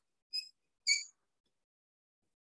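Two short, high-pitched squeaks of writing on a board, the second louder.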